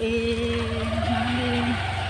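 Motor scooter engine running with a steady low rumble while riding slowly, and over it a person's voice holding one long, steady note for about a second and a half.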